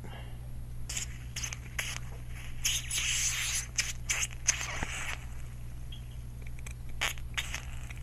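Aerosol can of silicone oil spraying in two short hissing spurts, one about three seconds in and one about five seconds in. Small clicks of handling come before and after the spurts, and the oil is going onto stiff hop-up gears.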